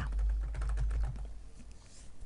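Typing on a computer keyboard: a quick run of key clicks that grows fainter toward the end.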